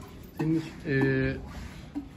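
A man's voice: two short spoken sounds or hesitation noises, the second drawn out.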